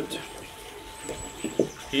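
Faint outdoor background with a thin, high bird call about a second in and a faint steady hum underneath.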